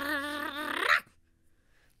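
A voiced, dog-like growl from an animated character, a wavering rolling growl that cuts off about a second in.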